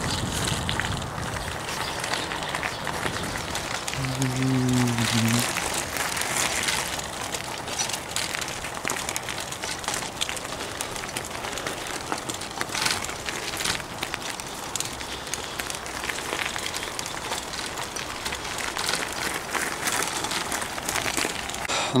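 Bicycle tyres rolling over a gravel track, a continuous crunching and crackling of loose stones. A brief steady low tone sounds about four seconds in and lasts just over a second.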